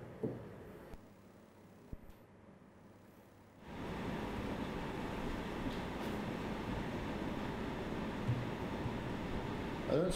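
Quiet room tone with a single faint click about two seconds in. Then, a little after three and a half seconds, a steady, even hiss sets in abruptly and holds.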